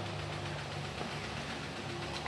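A steady low hum with a faint, even hiss over it, the background noise of a kitchen where a pot is at the boil on the stove.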